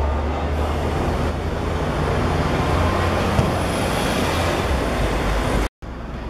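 Steady low rumble and hiss of outdoor background noise at a football pitch, with one short knock about three and a half seconds in.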